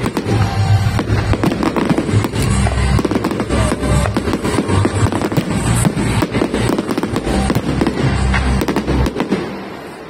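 Barrage of aerial firework shells bursting in rapid succession: dense, overlapping bangs and crackling with a deep rumble, dying away about a second before the end.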